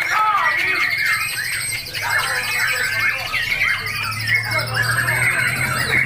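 Chorus of many caged songbirds, mostly white-rumped shamas (murai batu), singing over one another in quick chirps and whistles. A fast high trill runs through the first two-thirds, and a low hum grows louder in the second half.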